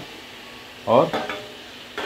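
Oil sizzling steadily under chunks of elephant foot yam frying with onions in a steel pressure cooker, with a metal ladle stirring them through the pot.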